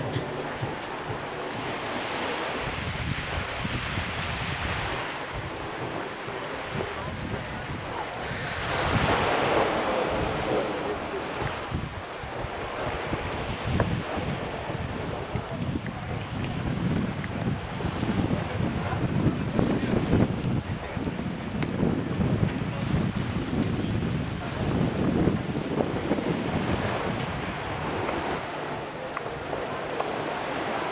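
Wind buffeting the camera's microphone in gusts, over the wash of surf breaking on the beach and rocks.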